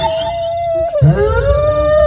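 A long howling ghost sound effect played through a loudspeaker: one held wailing note that dips sharply and slides back up about a second in.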